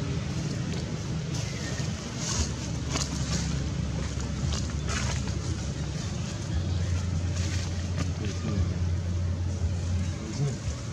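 Steady low rumble of a motor vehicle's engine running nearby, becoming a steadier, stronger hum about six and a half seconds in, with a few short crackles over it.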